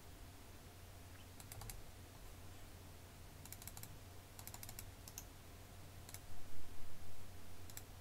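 Computer keyboard keystrokes and mouse clicks in small scattered clusters of a few sharp clicks each. A louder, low, dull bump comes about six and a half seconds in.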